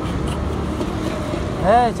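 Steady low rumble of street traffic noise, with a man's short call near the end.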